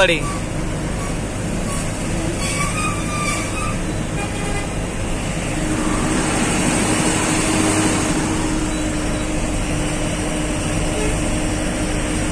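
Truck engine and road traffic noise heard from inside the cab while creeping along in slow traffic, with a steady hum joining about halfway through.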